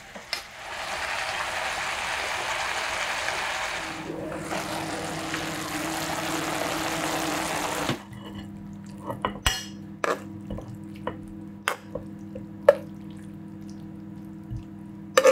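Vegetable stir-fry sizzling steadily in a frying pan as it is tossed, stopping abruptly about eight seconds in. Then scattered clinks and knocks of a spoon against the pan and plate as the stir-fry is served.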